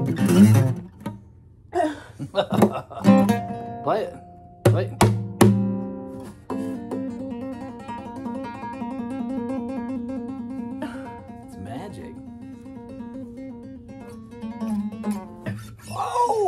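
Acoustic guitar music: sharply plucked and strummed chords for about the first six seconds, then softer held notes.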